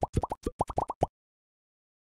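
A rapid run of about ten short popping blips, each rising quickly in pitch, from an animated-logo sound effect. They stop about a second in.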